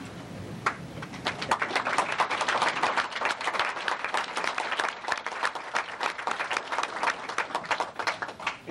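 An audience applauding. A lone clap comes first, then many hands join in about a second in and keep clapping steadily.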